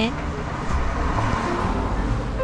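A road vehicle passing by: a rushing noise that swells, peaks about midway and fades.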